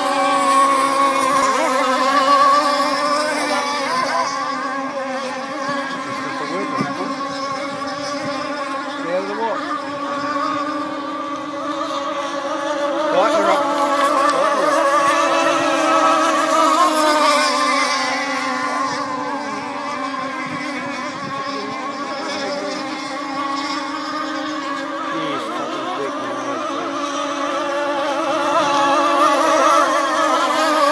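Several radio-controlled rigger racing boats running flat out, their small engines making a high, steady whine whose pitch wavers as they race. It gets louder near the end.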